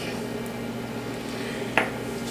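Steady low hum of room noise, with a single light clink near the end from a small dish knocking against the countertop or mixing bowl.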